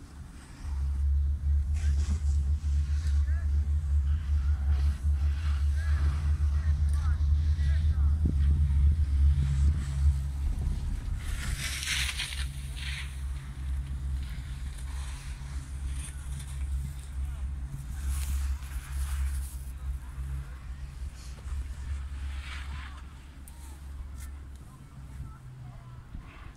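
Chairlift running: a steady low mechanical hum that sets in about a second in and fades near the end, with a few brief creaks or rattles.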